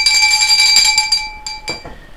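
A bell ringing: a bright, steady metallic ring with several high overtones that dies away near the end.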